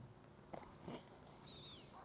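Near silence: faint outdoor ambience with a couple of soft knocks and, near the end, one short faint falling chirp.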